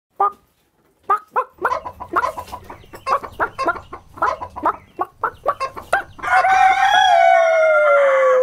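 Chickens clucking in quick short notes over a low hum, then about six seconds in a rooster crows one long cock-a-doodle-doo whose pitch falls at the end.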